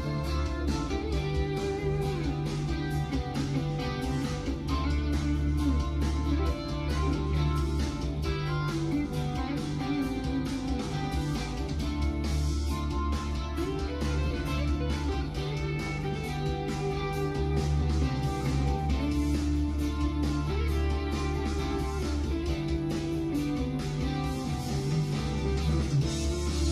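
Unmixed instrumental band recording playing back over studio monitor speakers: drums keeping a steady beat under bass guitar and a plucked string lead part on an NS/Stick.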